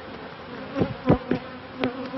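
Honeybees buzzing steadily around a frame lifted out of an open hive, with a few brief thumps about halfway through and near the end.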